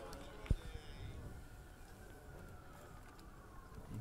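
Quiet open-air background with faint distant voices, and a single short low thump about half a second in.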